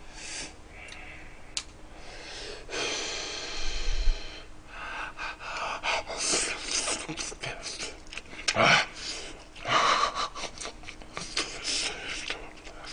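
A person gasping and breathing hard through the mouth while eating a mouthful of spicy gochujang-braised pork and radish: a string of hissing breaths, some a second or more long.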